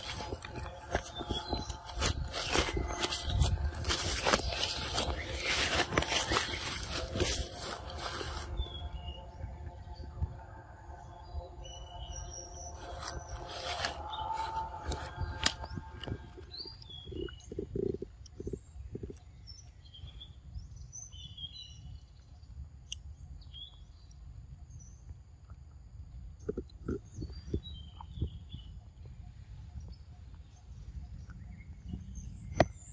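A loud, dense sound with steady tones fills the first eight seconds or so, then drops away to a quiet forest with birds chirping. A macaque bites and chews soft fruit close by, making short soft knocks a few times in the second half.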